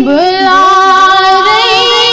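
A young female voice singing a Kashmiri naat into a microphone. A new phrase opens with a rising glide into long held notes, ornamented with small wavers.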